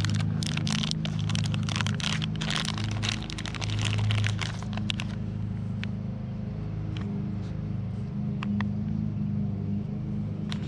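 A foil packaging bag crinkling and rustling as it is torn open and unwrapped for about five seconds, then a few light clicks as the plastic LED fog light bulb is handled. A steady low hum runs underneath.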